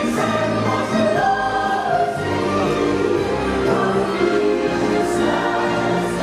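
Christmas parade music: a choir singing over orchestral backing, continuous and steady.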